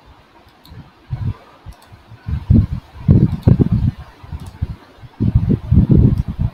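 Irregular low rumbling thuds close on the microphone, in clusters, with a few faint clicks.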